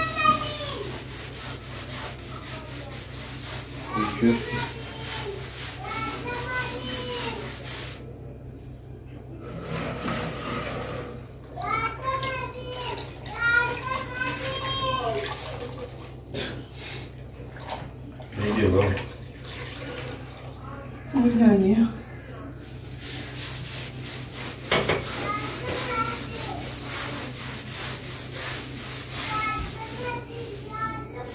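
Intermittent voices speaking in short snatches, over a wet cloth being rubbed on a painted wall and water sloshing as the cloth is rinsed in a bowl of water.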